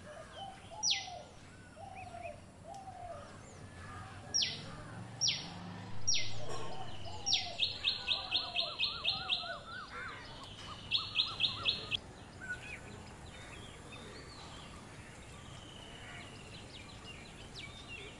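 Several birds calling. Loud, sharp whistled notes fall in pitch, and a quick run of high repeated notes comes near the middle, with a shorter run a few seconds later. Softer, lower down-slurred calls sound underneath in the first half, and only faint calls remain in the last few seconds.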